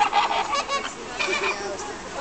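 A flock of flamingos honking together: many short, goose-like calls overlapping in a dense chatter.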